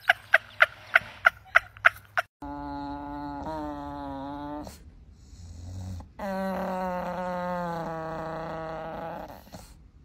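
An English bulldog making two long, drawn-out moaning vocalizations, each sliding slowly down in pitch, the second longer than the first. Before them comes a quick run of short sharp sounds, about three or four a second, which are the loudest thing here.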